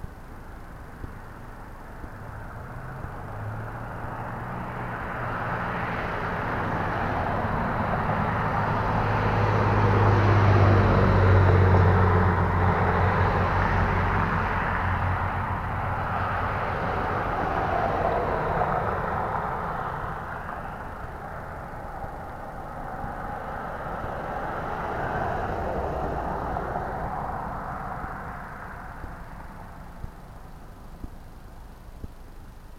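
Road traffic going by: one vehicle's engine hum and tyre noise build over several seconds, peak about a third of the way in and fade away. Two fainter passes follow.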